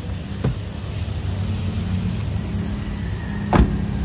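Steady low hum of the Daihatsu Sigra's engine idling, with a small click about half a second in. Near the end comes a single loud thump as a car door is shut.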